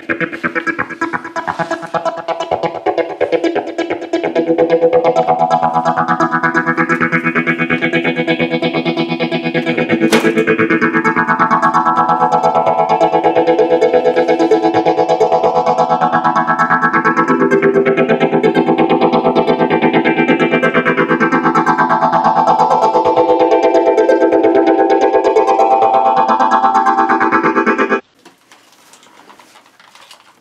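Background music: a guitar-led track with a slow, repeating sweeping effect. It cuts off suddenly about two seconds before the end.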